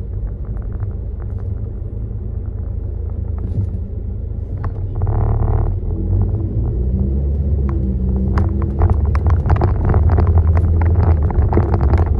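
Car driving on a rough road, heard from inside the cabin: a steady low rumble of engine and road with frequent short knocks and rattles, growing louder in the second half. A brief hiss comes about five seconds in.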